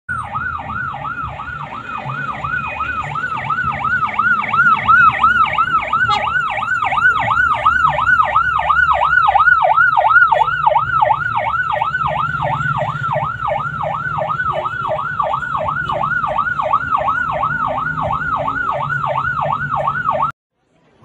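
Electronic siren in a fast yelp, a rising-and-falling tone repeating about two and a half times a second, steady and loud throughout, with a low rumble underneath.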